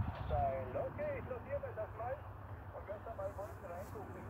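Faint, narrow-band voice of the other station coming through the uSDX transceiver's small speaker as single-sideband audio on 40 metres, over a low rumble.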